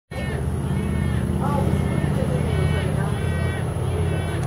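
Juvenile wood stork begging, a run of repeated nasal, pitched calls, over a steady low engine hum.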